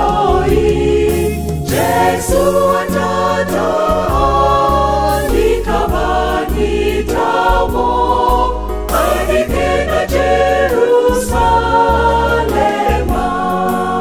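Church choir singing a gospel song in harmony, with a low accompaniment underneath.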